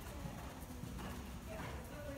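Hoofbeats of a ridden horse moving over the sand footing of an indoor arena, with faint voices in the background.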